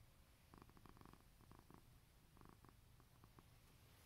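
A 17-year-old tabby cat purring faintly while being stroked, the purr coming in short rapid-pulsed groups that swell and fade with each breath.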